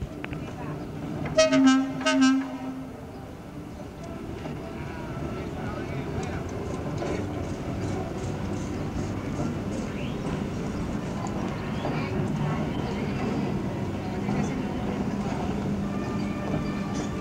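Hershey Electric Railway interurban car sounding two short horn toots, then rolling slowly closer over the track with a steady, growing rumble and light clicks from the wheels on the rails.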